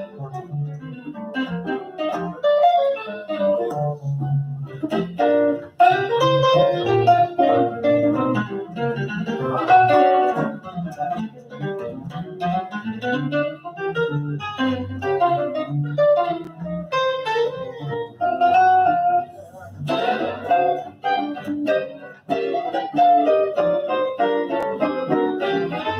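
Two hollow-body archtop electric guitars playing jazz together: plucked single-note melody lines over chords and bass notes.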